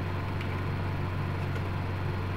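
Steady low hum with an even hiss over it, and two faint clicks about half a second and a second and a half in.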